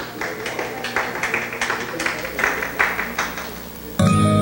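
Scattered clapping from a small audience, a quick irregular patter of hand claps.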